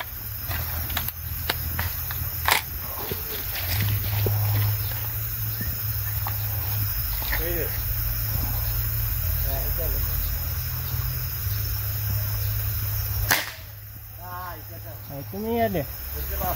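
Steady high hiss of night insects over a low rumble on the microphone, with scattered small clicks. About thirteen seconds in comes one loud, sharp crack, after which the rumble stops.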